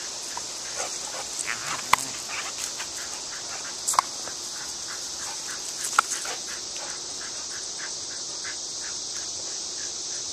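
A steady, high-pitched outdoor insect chorus. Over it comes a run of short faint sounds in the first seven seconds, with three sharp clicks about two seconds apart.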